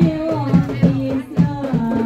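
Group of voices singing sholawat in unison over rebana frame drums, which strike an even beat a little over twice a second.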